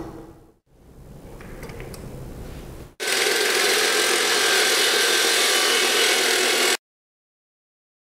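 Faint handling and rubbing as a 16-inch diamond blade is fitted. About three seconds in, the AGP C16 electric handheld concrete saw cuts in flush-cut mode: a loud, steady grinding noise with a high whine for about four seconds, which then stops suddenly.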